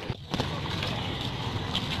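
Steady outdoor noise of a crowd of people walking, with wind rumbling on the microphone.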